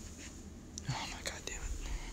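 A person whispering faintly, with a few small clicks about a second in.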